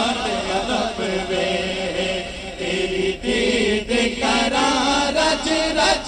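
Male voices singing a Punjabi naat, a lead singer with a chorus of backing voices chanting along.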